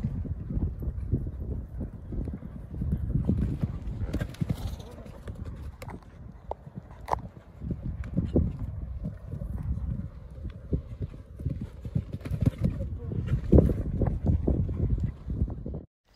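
Horses' hooves thudding irregularly on a sand arena surface as horses canter past close by, with a few sharper knocks among the dull beats.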